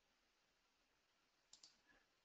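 Near silence, broken by two faint, quick clicks about one and a half seconds in: a computer mouse being clicked.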